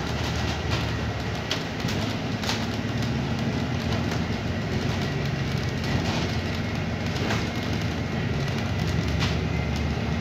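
Interior ride noise of a moving bus: a steady low drone from the drivetrain and road, a faint steady high whine, and scattered sharp rattles and clicks from the fittings.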